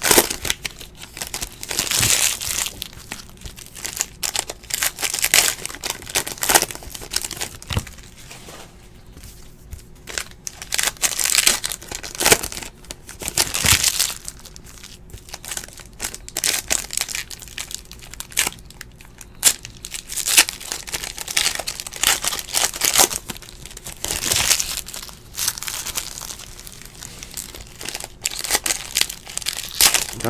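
Crinkling of shiny plastic trading-card pack wrappers as they are handled and opened by hand. The crinkling comes in irregular bursts with a few quieter stretches.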